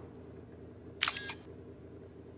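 A sharp mechanical click with a short rattle about a second in, a switch being flipped on a handheld radio-control transmitter, over a faint steady low hum.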